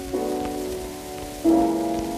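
Piano chords in the slow Larghetto of a 1920s violin-and-piano recording, struck twice about a second and a half apart, each dying away, under the steady surface noise of the old disc.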